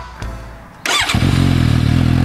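A Suzuki GSX-S750's 749 cc inline-four starts through a Yoshimura R-11 Sq slip-on exhaust. It catches a little under a second in with a short flare of revs, then settles into a steady idle.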